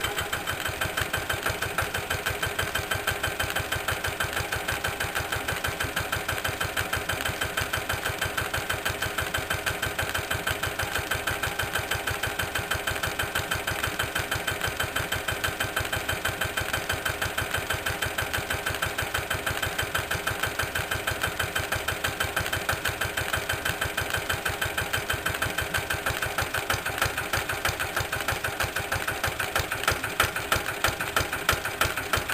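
Lister LT1 single-cylinder, air-cooled diesel engine running at a steady slow speed, an even, regular firing beat, while belt-driving a small pump.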